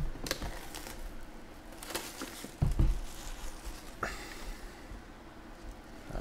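Plastic shrink wrap being torn and crinkled off a cardboard trading-card box, with scattered light knocks from handling the box and one heavier thump a little under three seconds in.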